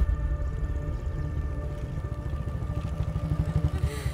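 Motorcycle engine running at low speed with a rapid low pulse, a little louder just before it eases off at the end as the bike pulls up.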